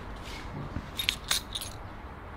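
A few quick, light clinks close together about a second in, over a steady low background rumble.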